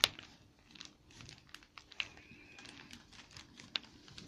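Scattered faint clicks and light metallic ticks as the gears on a Yamaha FZR600R transmission shaft are turned and slid by hand, with a sharper click at the start, another about two seconds in and one near the end.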